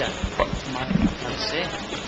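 Short, scattered voice sounds over steady room noise, with no sustained speech.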